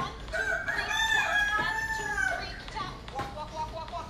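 A rooster crowing once, one long call of about two seconds starting just after the beginning.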